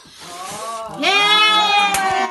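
People's voices crying out in a long, drawn-out wail that swells about a second in and is held, with the pitch sliding.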